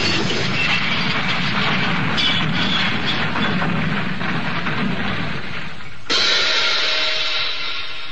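Animated film soundtrack: a dense, noisy din for the first six seconds, which cuts off abruptly and gives way to held orchestral chords.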